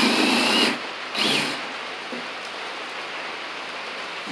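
Handheld power drill driven into wooden shelf framing in two short bursts: the first lasts until just before a second in, the second is briefly run about half a second later, its motor whine rising.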